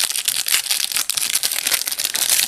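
Plastic wrapper of an Upper Deck hockey card pack crinkling as it is handled and opened, a dense run of small crackles.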